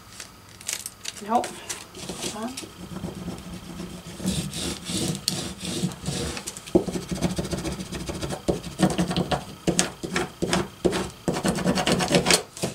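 Transfer tape being rubbed and pressed down over vinyl lettering by hand, a continuous scratchy paper rubbing with many small clicks and crinkles, pressed again because the letters are not lifting off their backing.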